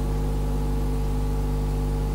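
Steady low electrical hum with several steady overtones, unchanging in pitch and level.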